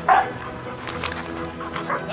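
A search-and-rescue dog barks once loudly just after the start, then gives a few fainter, shorter barks, over background music.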